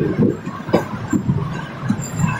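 Bolan Mail passenger train rolling slowly, heard from its carriage window: an uneven low rumble of the coaches and wheels, with a sharp knock about three-quarters of a second in.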